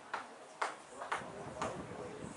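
Sharp hand claps at an even pace of about two a second.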